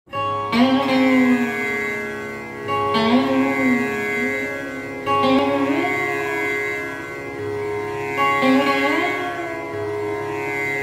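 Indian-style lap slide guitar, an acoustic guitar played flat with a steel bar, repeating a short melodic phrase with gliding notes that restarts about every two and a half seconds over a steady drone. The phrase is a looped lehra of the kind that keeps time for tabla, with no tabla strokes yet.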